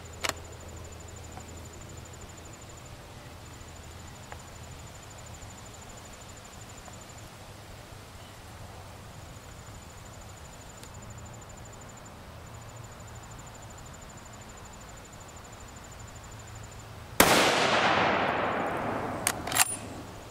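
A single shot from a .300 Winchester Magnum bolt-action rifle about three-quarters of the way through, a sharp report that rings on and fades over about two seconds. It follows a long quiet stretch with only a small click near the start and faint outdoor background.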